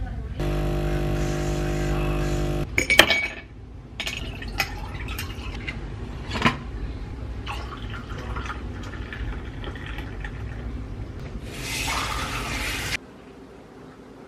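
A coffee machine buzzes steadily for about two seconds, followed by clinks of glassware and liquid being poured into a glass.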